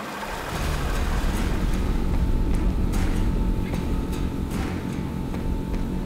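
Outboard boat motor running up to speed, its propeller churning the water, with background music over it.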